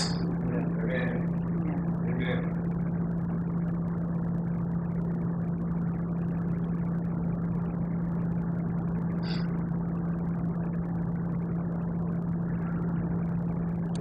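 A steady low hum with a faint hiss in the room, and a few faint brief sounds at about one, two and nine seconds in.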